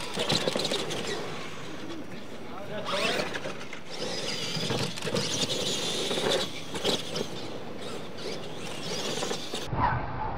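Radio-controlled monster trucks running on a dirt track: electric motors whining and tyres scrabbling on dirt, with repeated knocks as the trucks land off jumps and bump the ramps. The sound changes abruptly near the end.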